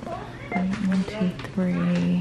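A person's voice making drawn-out sounds at a level pitch, not clear words: short ones about half a second in and a longer one near the end.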